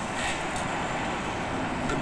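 Steady outdoor background hum of street traffic.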